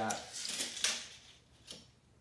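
Metal tape measure being drawn out along the edge of an MDF box: the blade rattles and scrapes, with a sharp click just under a second in and a fainter click near the end.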